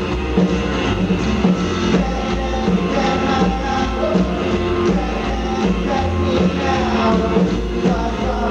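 Live rockabilly band playing: hollow-body electric guitar, upright bass and drum kit keeping a steady driving beat.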